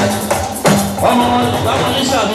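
Live band music played through PA speakers: drums and percussion keep a steady beat under held keyboard or bass notes.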